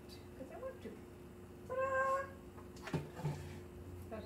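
A domestic cat meowing once, a single call of about half a second roughly two seconds in, followed by a sharp click.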